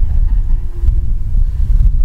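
A pause in the speech filled by a loud, steady low rumble with no clear source.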